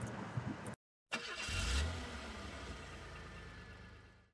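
Background hiss cuts out to a brief silence, then a low rumble starts about a second in, is loudest around two seconds and fades away.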